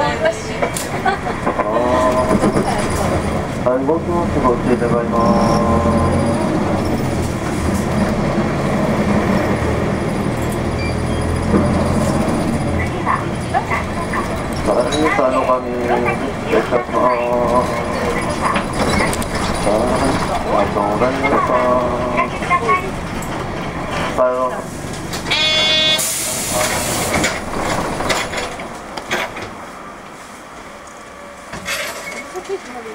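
Nissan Diesel U-UA440LSN city bus heard from inside: the diesel engine running under way, its pitch rising and falling several times as the bus pulls through its gears. Near the end a brief high squeal and a short burst of air hiss from the brakes as the bus comes to a stop.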